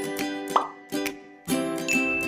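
Intro jingle music: a run of pitched notes about every half second, with bubbly plop sound effects.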